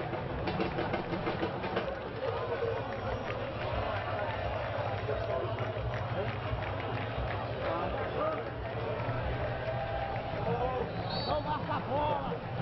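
Field sound of a football match: distant shouts and calls from players on the pitch and scattered voices from a sparse crowd, over a steady low hum.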